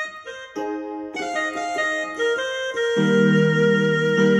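Portable electronic keyboard (Yamaha PSR-E series) played on a piano voice in F major: held chords built up note by note over the first second, with low bass notes joining about three seconds in.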